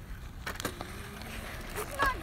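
Small wheels of a mini electric dirt bike rolling over loose gravel, faint, under a low steady rumble with a few light clicks.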